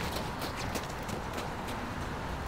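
Outdoor background noise, a steady low rumble, with a scatter of light, irregular clicks or taps, several each second.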